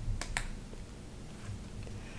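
Two sharp snaps of stiff card stock in quick succession just after the start, as a stack of message cards is handled in the hands and the next card is brought up, followed by faint handling.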